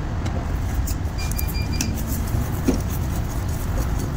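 Steady low background rumble with a few faint, light clicks of a screwdriver working a screw on a truck alternator's regulator end, and a brief broken beeping tone a little over a second in.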